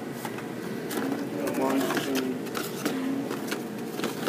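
Faint, indistinct voices of people talking over a store's steady background hum, with scattered light clicks and rustles.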